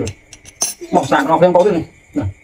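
Metal spoon clinking against a ceramic dipping bowl as it is set down: a few light clicks in the first second, then a man's voice.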